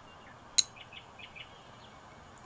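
Faint background birdsong of small birds chirping, with one short, sharp, high-pitched blip about half a second in.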